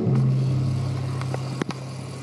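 Live acoustic ensemble music: one low note held between sung lines and slowly fading, with a couple of soft clicks.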